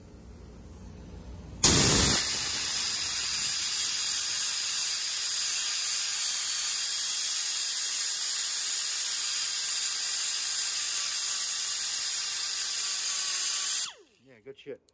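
Air-powered die grinder switching on about two seconds in and running at steady speed with a loud hiss, its larger fluted bit countersinking screw holes in a carbon-fibre plate. It cuts off suddenly just before the end.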